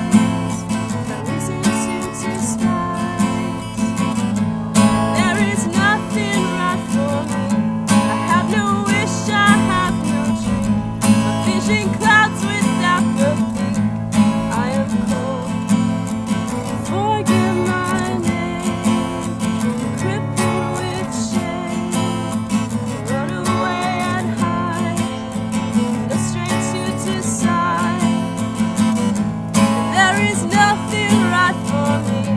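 Takamine steel-string acoustic guitar strummed steadily through a song, with a voice singing over it in stretches.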